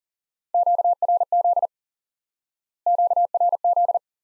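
Morse code sidetone, a steady pitch of about 700 Hz, keying the Q-code QRZ (dah-dah-di-dah, di-dah-dit, dah-dah-di-dit) at 40 words per minute. It is sent twice, the second time starting about three seconds in. QRZ asks "who is calling me?"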